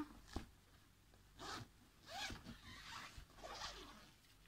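Zipper on a pram's fabric hood being pulled to open a mesh ventilation panel, heard faintly in three strokes, the last the longest.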